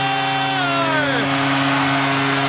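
Arena goal horn blowing one long, steady, low blast, the signal of a home-team goal.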